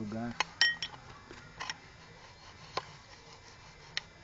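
Light metal-on-metal clinks and taps as the clutch release fork and its shaft are fitted into a Fiat Uno gearbox bellhousing. The loudest is a short ringing clink about half a second in, followed by a few fainter clicks over the next two seconds.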